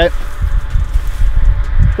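Range Rover Velar's powered tailgate closing under its electric motor, a faint steady hum, after being triggered by a foot swipe under the rear bumper. Heavy wind rumble on the microphone is the loudest sound.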